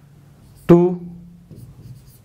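Chalk tapping and scratching on a blackboard while numbers and letters are written: faint, irregular strokes. One short spoken word partway through is louder.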